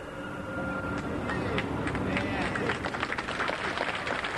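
An audience clapping steadily, with crowd murmur beneath, in a live open-air recording.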